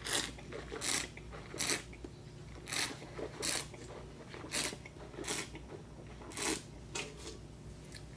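A wine taster slurping air through a mouthful of red wine to aerate it, a run of about nine short hissing slurps roughly a second apart.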